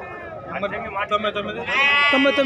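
A sheep bleats loudly, one long call starting near the end, over people talking.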